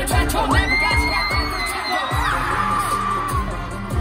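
Live K-pop concert music recorded from the audience: a singer on stage over a steady kick-drum beat, with a long high held note that comes in about half a second in and slides down and fades by about three and a half seconds; the drums drop out about two seconds in.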